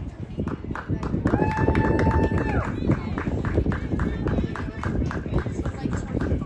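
A horse's hoofbeats on sand arena footing in a steady rhythm of about three strikes a second, under wind rumbling on the microphone. A held whistle-like tone sounds for about a second, starting just over a second in.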